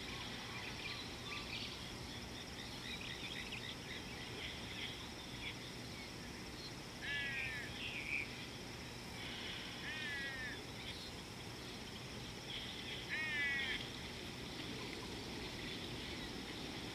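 Wild birds calling: a call of a few quick, bending notes comes three times, about every three seconds, over a steady background of faint chirping.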